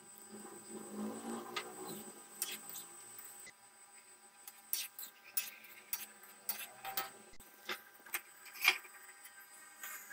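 Wheat-flour gulab jamun dough balls deep-frying in hot oil in a wok: a faint sizzle over the first few seconds, then scattered sharp clicks and pops, about one or two a second.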